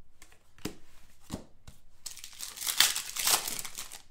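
Trading cards and their wrapping handled by hand: a few light clicks, then a dense crinkling rustle for about the last two seconds.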